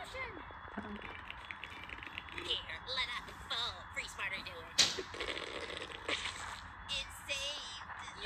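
Audio of an animated cartoon played back from a screen and picked up by a phone: short bits of character voices and small sound effects over a steady hiss, with one sharp slap-like hit about five seconds in.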